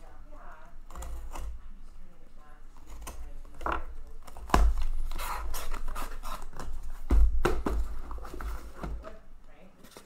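A cardboard shipping case being torn open and handled: packing tape tearing and cardboard flaps scraping and rustling, with two sharp knocks about four and a half and seven seconds in as the boxes inside are shifted.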